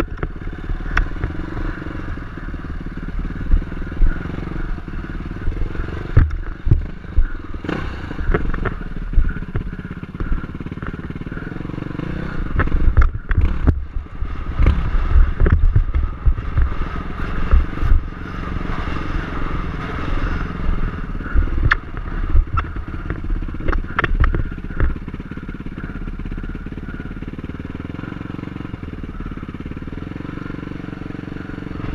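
Dirt bike engine running at low revs while the bike crawls over rock ledges, with frequent sharp knocks and clatter as it bumps over the rock. The sound steadies and eases over the last few seconds.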